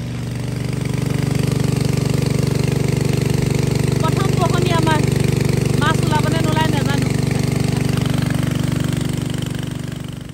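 Small engine-driven water pump running steadily, pumping a pond out through its outlet pipe. The hum grows louder about a second in. A voice rises over it twice near the middle.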